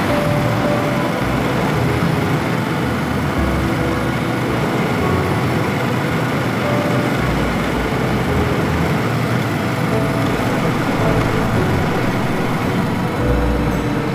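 KTM 1290 Super Adventure R motorcycle riding at road speed: steady wind rush over the helmet-mounted microphone, with the V-twin engine and tyre noise underneath and a low rumble that comes and goes.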